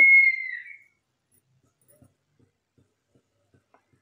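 A high, clear whistling tone that sinks slightly in pitch and fades out about a second in, followed by near silence with a few faint ticks.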